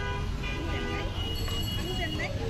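Busy road traffic with vehicle horns tooting: one steady horn at the start, another briefly around the middle, and a thin high tone held through the second half, over a constant low traffic rumble and indistinct voices.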